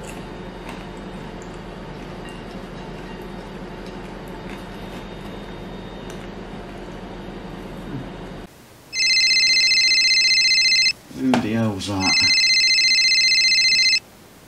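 Mobile phone ringtone: a loud electronic ring in two bursts of about two seconds each, with a short voice sound between them. Before it, about eight seconds of steady background hum with a few light clicks, which cuts off abruptly.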